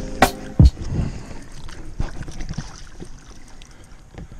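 Knocks and clatter of a landing net's frame and handle being handled against a boat's hull: two sharp knocks in the first second, then lighter knocks and rustling that fade away.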